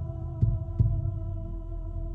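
Background music: a sustained held chord over a low rumble, with a low double thump like a heartbeat about half a second in.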